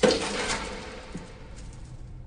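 A soundtrack sound effect: a sudden hit at the start that fades away over about two seconds, with a low ring held under it.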